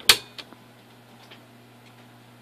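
Piano-key push button on a vintage Wega tube radio pressed in with one sharp click, followed by two lighter clicks; a low steady hum runs underneath.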